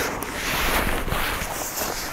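Steady rustling and scraping of a Samsonite Tectonic backpack's fabric as hands dig through one of its pockets.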